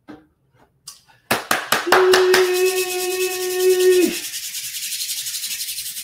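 Rubbing and scraping noise close to the microphone. It opens with a rapid run of clicks, and a steady held tone sounds over it for about two seconds before falling in pitch as it ends.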